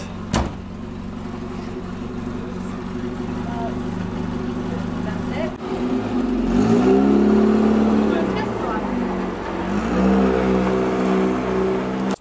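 Classic convertible sports car's engine idling, with a sharp knock like a door shutting about half a second in. The engine then revs up and back down as the car pulls away, and revs up again as it drives off.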